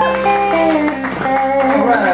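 Live guitar music: a Telecaster-style electric guitar playing lead notes that bend in pitch over a strummed acoustic guitar.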